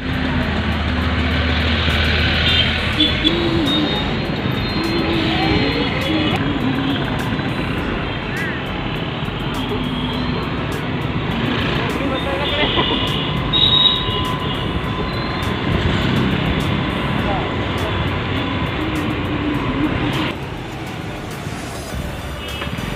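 Busy road traffic: running vehicle engines and tyre noise, heard from a moving two-wheeler, with voices and brief pitched sounds mixed in.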